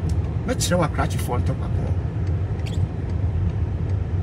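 Steady low rumble of a car being driven, heard inside the cabin, with a short stretch of a man's voice about half a second in.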